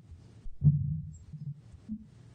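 Muffled low thuds of footsteps and bumps near the lectern microphone, the loudest about half a second in, followed by a few softer ones.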